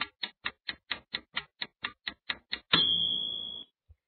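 Countdown timer sound effect: a clock-like tick about four times a second, ending about two-thirds of the way in with a high ringing tone that fades over about a second, marking time up.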